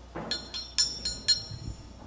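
A ring bell struck four times in quick succession within about a second, each strike ringing with a bright metallic tone: the bell signalling the start of the match.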